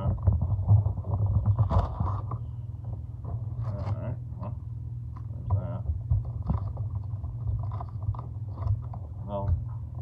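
Cardboard hobby box of trading cards being opened, with irregular scraping and rustling of the lid and flaps under the hands, over a steady low hum. Near the end the hands handle the card packs inside, rustling their wrappers.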